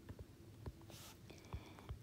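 Faint ticks and light scratching of a stylus writing on an iPad's glass screen.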